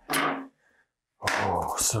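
Mainly a man's voice: a short burst of sound right at the start, then he starts speaking a little over a second in.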